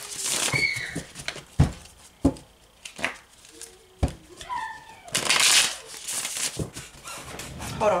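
A deck of tarot cards being shuffled by hand: several sharp taps and card slaps, then a roughly one-second riffling rush about five seconds in. A few short, high-pitched calls sound faintly in the background.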